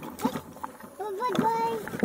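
A young child's voice making a drawn-out call about halfway through, with a few short knocks around it.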